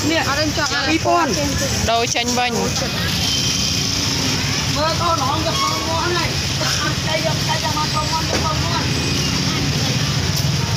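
Market chatter: several people talking in Khmer over a steady low rumble of street traffic and motorbikes.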